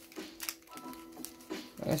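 Foil Pokémon booster pack wrappers crinkling and clicking in a few short bursts as a stack of sealed packs is handled and set down, over faint background music with held notes.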